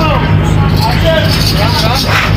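Indistinct voices of people talking in the background over a steady low drone.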